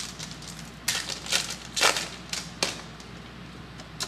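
A foil trading-card pack wrapper being torn open and crinkled by hand: a handful of short, sharp crackles, bunched from about one to three seconds in, with quieter handling after.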